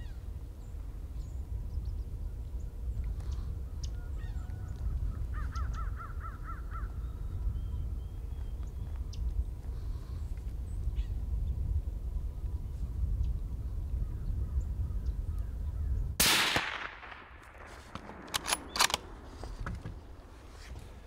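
A single suppressed rifle shot, a 6.5 PRC, cracks suddenly about sixteen seconds in and rolls away in a long fading echo, followed by a few sharp clicks. Before it there is only a steady low wind rumble with a few faint bird calls.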